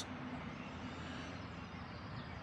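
Faint, steady noise of road traffic on a busy roundabout, heard from inside a tent pitched on it.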